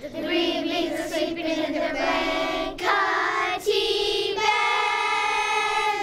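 A group of children singing a harvest song about vegetables in unison, moving through a few held notes and ending on a long sustained note.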